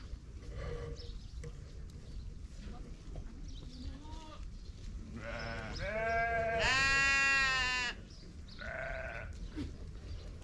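Sheep and goats bleating: a few calls build up about five seconds in, then one long, loud bleat, and a shorter bleat near the end.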